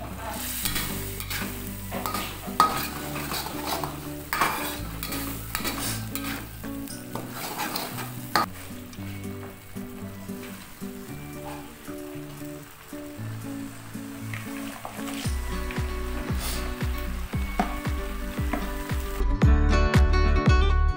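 Chili spice paste sizzling in a hot steel wok, scraped and stirred with a metal spatula, with many short scrapes. Background music plays underneath and grows louder with a strummed beat in the last few seconds.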